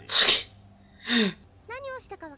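Two loud, short, sneeze-like bursts of breath from a person, about a second apart, the second ending in a falling voiced sound. A voice starts speaking near the end.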